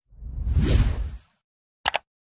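Whoosh sound effect swelling and fading over about a second, then a quick double click as the on-screen subscribe button is pressed.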